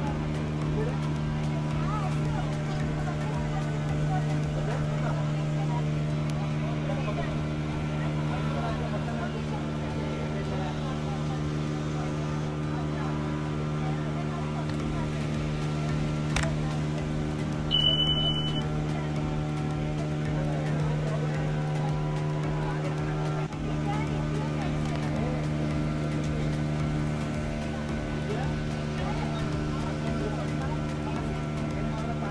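Passenger ferry's engine running with a steady hum, under indistinct chatter from the passengers. About sixteen seconds in there is a single click, then a short high beep about two seconds later, typical of an on-screen subscribe-button sound effect.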